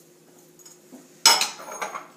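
A small glass dish set down hard on a granite countertop: one sharp clink a little over a second in, followed by a few lighter knocks.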